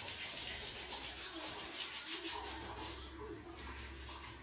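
Small brushes scrubbing sneakers, a steady run of quick back-and-forth scraping strokes.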